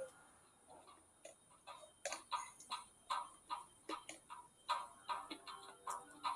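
Quick footsteps on a concrete floor, faint and even, about three steps a second, starting about a second in.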